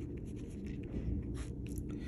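Pen writing on paper: soft, faint scratching strokes as a word is written out and then underlined.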